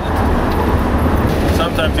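Steady low rumble of a coach bus's engine and road noise, heard inside the passenger cabin. A man starts speaking near the end.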